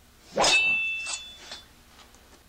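A sharp metallic clang about half a second in, with a high ring that hangs on for about a second, followed by two fainter strikes.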